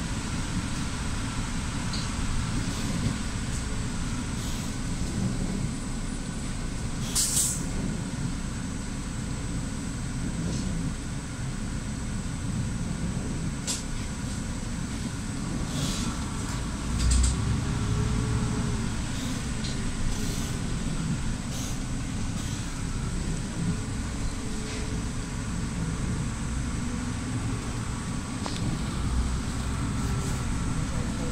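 Interior ride noise of a city bus on a wet road: a steady low rumble from the drivetrain and tyres, with a few short sharp clicks and knocks from the cabin.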